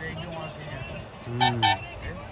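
A vehicle horn sounding two short toots in quick succession, over distant voices.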